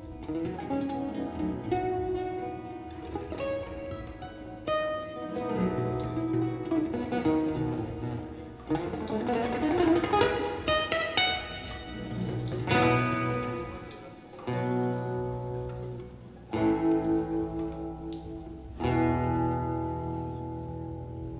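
Two acoustic guitars playing instrumental music live, picking a run of single notes and then striking three louder chords that ring on in the second half.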